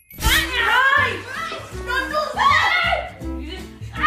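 A high, child-like voice making wordless cries that swoop up and down in pitch, over background music with low held notes.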